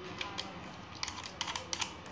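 A quick, irregular run of sharp clicks, two early on and then a tight cluster of about seven in the second half.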